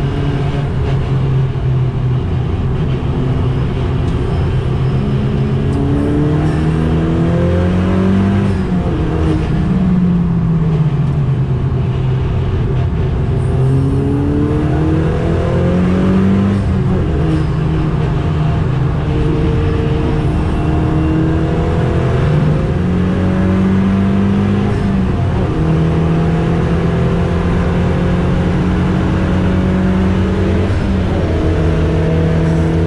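Dallara Stradale's turbocharged Ford EcoBoost four-cylinder heard from inside the cabin, pulling hard through the gears. Its pitch climbs and steps down at each gear change, with one long fall about nine seconds in as the car slows for a corner.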